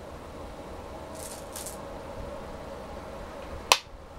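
A Go stone placed on a wooden Go board with one sharp click near the end, over a steady faint hum. Two faint soft scrapes come a little over a second in.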